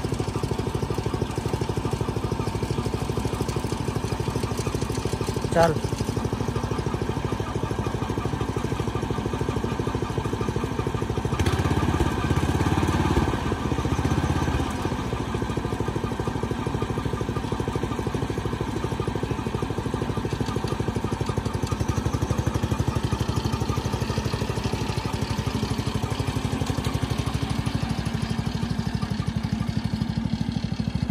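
Small 7 HP petrol engine of a handmade mini tractor running steadily, with a fine, even rhythm. It gets louder for a few seconds about twelve seconds in, then settles back.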